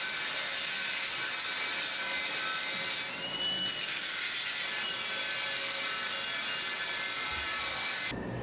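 Steady, hissing machinery noise of construction work, with a brief high whine about three seconds in.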